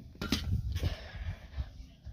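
Handling noise from a handheld phone: a sharp click about a quarter second in, followed by low thumps and rustling as the phone swings around.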